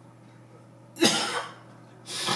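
A man coughing once, a short harsh cough about a second in, with another cough starting right at the end.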